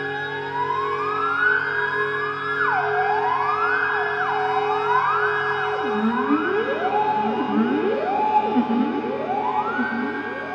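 Ondes Martenot playing repeated rising glissandi on its ribbon, siren-like swoops that climb, hold and drop back. They come faster and move into a lower register about six seconds in, over a steady low drone.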